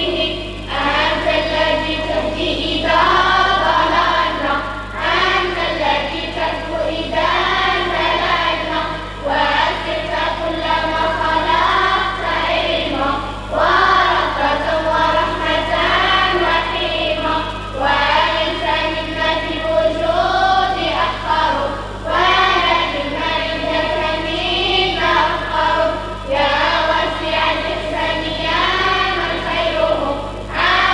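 A group of children singing together through a public-address system, in sung phrases of about four seconds each, over a steady low electrical hum.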